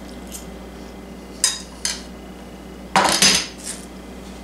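A fork clinking against a dinner plate a few times, then a louder clatter about three seconds in as the plate is set down on the counter.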